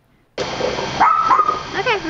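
A dog barking, worked up at a squirrel, with a short high-pitched call about a second in, over steady outdoor background noise.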